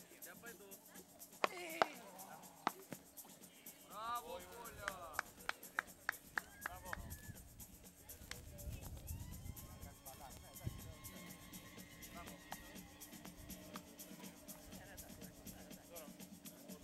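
Faint background music with voices, and sharp knocks of a beach tennis paddle striking the ball, a few in the first three seconds. About four to seven seconds in there is a quick run of light taps under a voice.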